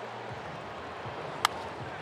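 A single sharp crack of a wooden baseball bat meeting a pitched ball about one and a half seconds in, over the steady hum of a ballpark crowd. It is solid contact, struck for a home run.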